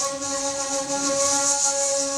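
Flute playing solo, holding one long low note after a short run of changing notes.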